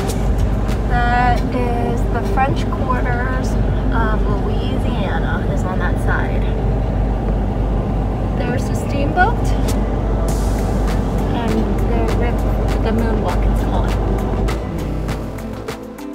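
Steady low engine rumble of a passenger ferry underway on the river, heard from inside the cabin. Music with singing runs over it, and the rumble eases near the end.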